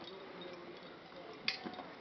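Quiet outdoor background with a faint, indistinct voice, and one sharp click about one and a half seconds in.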